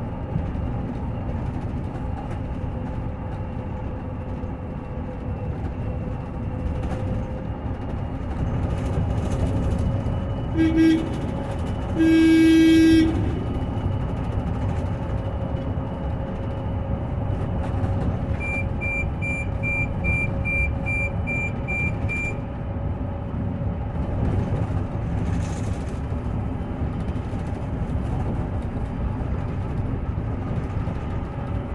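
Inside an Olectra K7 electric bus on the move: steady road and tyre noise with a steady motor whine. The horn sounds twice about ten seconds in, a short toot and then a blast of about a second. A little past halfway comes a run of about ten short high beeps.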